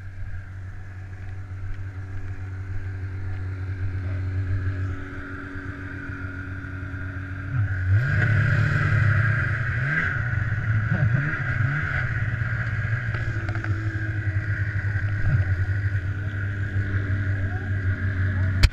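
Snowmobile engine running: a steady low drone at first, then louder from about eight seconds in, with the pitch rising and falling as it revs.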